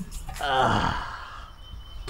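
A man lets out a long sigh whose pitch falls steeply, starting about half a second in and dying away within a second.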